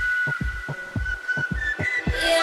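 Electronic dance music from a DJ mix in a stripped-down breakdown: a kick drum thudding about four times a second under a held high synth note, with the bass and the rest of the track dropped out.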